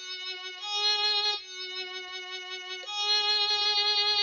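Music app playing back a short string of randomly entered notes in a synthesized instrument sound: two short notes, then two longer held notes.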